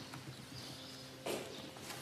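Old parchment manuscript pages being handled and turned by hand: faint rustling, with a soft brushing stroke about a second and a half in, over a low steady hum.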